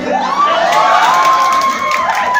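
A woman's long, high-pitched cheering shriek that rises and is then held for over a second, over a group of people cheering.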